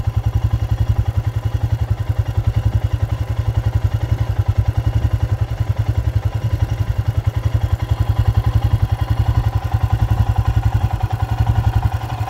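A motor or engine running steadily with a low, even throb, pulsing about twelve times a second.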